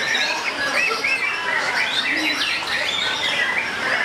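Songbird chatter and whistling, a dense run of short rising and falling notes that overlap as if from several birds at once, including a caged white-rumped shama (murai batu).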